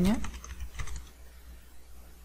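Typing on a computer keyboard: a quick run of key clicks about half a second in, fading to a few faint keystrokes, over a low steady hum.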